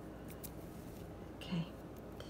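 Quiet handling of a stone-bead bracelet over tissue paper: a few faint clicks and rustles as it is picked back up.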